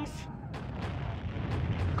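Continuous low rumble of a distant artillery bombardment on a battlefield, with a few faint sharp cracks over it.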